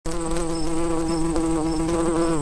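Bee buzzing sound effect: one steady, held buzzing pitch with a slight waver, with faint short high blips about every half second.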